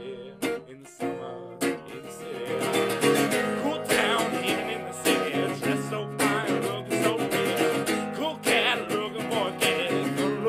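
Acoustic guitar being strummed: a few separate chords at first, then steady, rhythmic strumming from about two seconds in.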